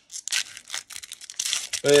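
A Pokémon booster pack's foil wrapper being torn open by hand: a quick run of crinkly rips. A man's voice starts at the very end.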